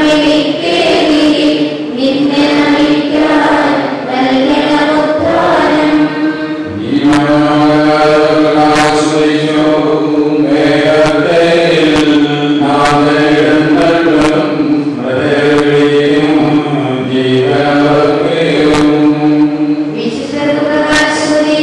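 A group of voices singing a slow, chant-like hymn together in long held notes, with a steady sustained tone underneath.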